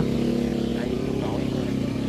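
A small boat engine running steadily at a constant pitch.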